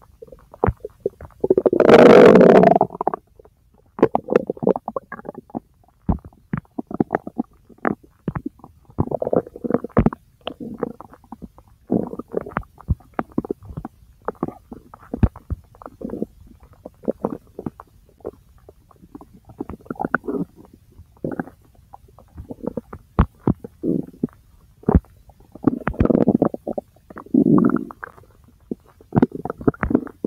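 Gurgling bowel sounds from the large intestine: irregular gurgles and short crackling pops, with one loud, long gurgle about two seconds in and another bigger run of gurgles near the end.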